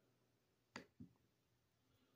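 Two faint taps on a laptop, about a quarter second apart, against near silence.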